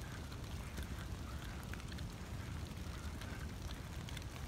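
Steady rain falling: an even hiss with scattered faint drip ticks over a low rumble.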